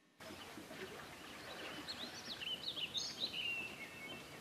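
Outdoor ambience: a steady background hiss with birds chirping, starting abruptly about a quarter second in, with the chirps coming quick and many in the second half.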